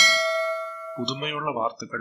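A notification-bell sound effect: a bright bell chime struck once, ringing and fading over about a second, as the bell icon is clicked.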